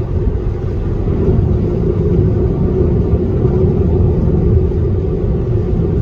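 Steady low road and tyre rumble heard inside the cabin of a moving Tesla electric car.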